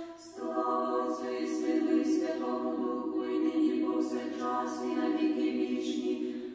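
An a cappella women's choir singing held, chordal phrases. There is a short breath-pause at the start, and the voices come back in about half a second in.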